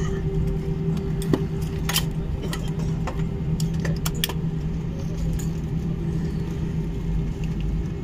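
Airliner cabin noise as the jet rolls along the runway: a steady engine drone with two held tones over a low rumble, and scattered sharp clicks and rattles from the cabin.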